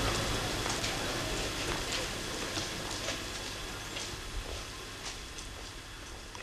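Faint background hiss fading steadily down, with scattered light clicks and taps at irregular intervals.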